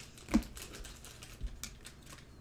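Trading cards being handled and sorted by hand: a few light clicks and taps of card stock against card and fingernails, the loudest with a soft thump about a third of a second in.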